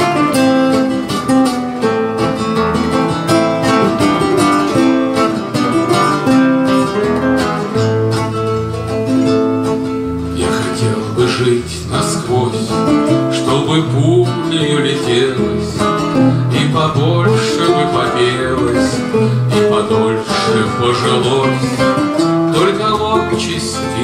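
Two acoustic guitars, one a classical nylon-string guitar, playing an instrumental passage together, notes picked over chords. About ten seconds in, a man's singing voice comes in over the guitars.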